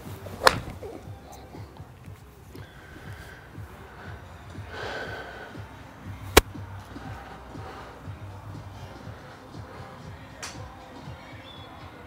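A 7-iron striking a golf ball off a range mat: one sharp crack about half a second in. A second equally sharp crack comes about six seconds later.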